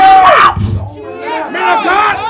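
A preacher's loud shout, held on one pitch and breaking off about half a second in, then several overlapping voices calling out in response.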